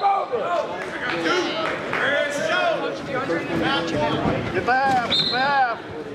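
Several voices shouting and calling over one another in a gym during a wrestling bout, with a short high steady tone about five seconds in.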